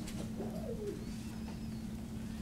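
Quiet room tone: a steady low electrical or ventilation hum, with a faint brief wavering, cooing-like call about half a second in.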